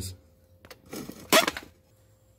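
A single short knock or clatter about a second and a half in, with a fainter click before it.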